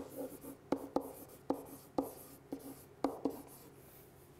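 Pen writing on an interactive whiteboard's hard surface: a scratchy hiss of strokes broken by a series of sharp taps as the pen tip meets the board.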